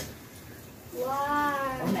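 A domestic cat giving one long meow about a second in, rising and then falling in pitch.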